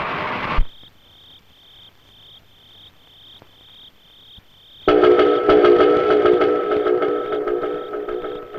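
Crickets chirping in even pulses about twice a second in a night soundtrack. About half a second in, a noise ends with a sharp thump. About five seconds in, a loud sustained sound of several held tones begins suddenly.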